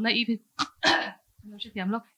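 A woman speaking into a microphone in a small room, with one short, loud sound about a second in.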